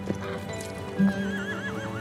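A horse whinnies from about a second in, one shaky, wavering call that drifts down in pitch, over background music with sustained notes.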